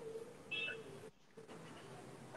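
Faint room tone on a video call, with a short high tone about half a second in and a brief drop to near silence about a second in.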